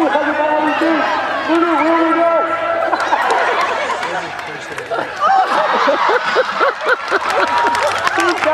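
People talking and calling out among a crowd of spectators, with overlapping voices throughout.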